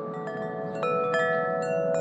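Large tubular wind chime with long metal tubes, its clapper disc swung by hand. The tubes are struck again and again, about five times in two seconds, and each ringing tone carries on over the next so they pile into a sustained chord.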